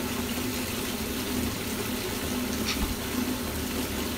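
Water running steadily from a bathtub spout, pouring into a tub already deep in bubble-bath foam.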